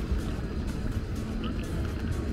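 Busy city street ambience: a steady low rumble of traffic mixed with the voices of passers-by.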